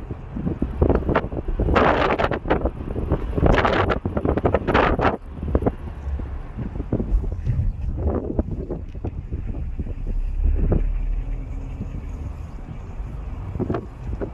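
Wind buffeting a handheld microphone outdoors: a constant low rumble with louder irregular gusts about two and four seconds in, and a few small clicks.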